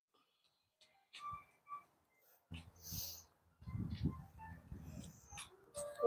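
Faint breathing and body-movement sounds from a person moving through a yoga pose, with a breathy exhale about three seconds in and low rustling just after. Two short faint chirps come about a second and a half in.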